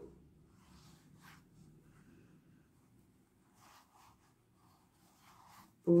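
Faint, brief rustles and scratches of a crochet hook and yarn as stitches are worked, scattered over near-quiet room tone. A woman's voice starts again right at the end.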